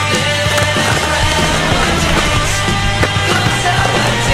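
Rock music soundtrack playing loudly, with a skateboard rolling over brick pavement under it and a few sharp knocks from the board.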